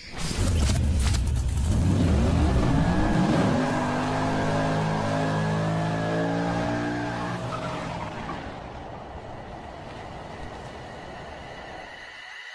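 Car doing a burnout: the engine revs up and holds at high revs while the spinning tyres squeal, the sound fading away over the last few seconds.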